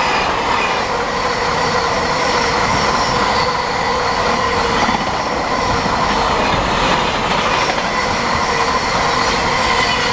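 Container freight train's wagons rolling past close by at speed: a loud, steady rumble of wheels on rail with a faint high whine running through it.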